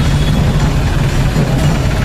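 Loud, steady outdoor procession noise dominated by a deep low rumble, with music mixed in.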